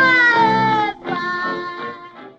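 A young girl singing high, sustained notes with accompaniment, from a 1930 Vitaphone sound-on-disc recording. One long note drifts slightly down and breaks off about a second in, and a second note follows and fades near the end.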